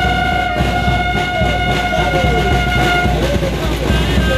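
Brass band music: a trumpet holds one long note for about three seconds over a steady drum beat, with lower sliding notes coming in under it before it ends.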